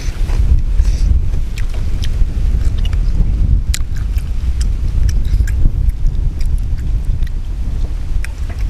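Wind buffeting the microphone, a steady low rumble, under scattered small clicks and smacks of chewing and handling food.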